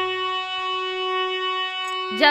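Instrumental interlude of Indian folk devotional music: a single note held steadily on a keyboard instrument, with a low drone fading out about half a second in.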